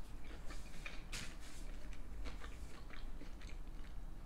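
A person chewing a mouthful of loaded tater tots topped with cheese and ranch: quiet, irregular mouth clicks and smacks, one slightly louder about a second in.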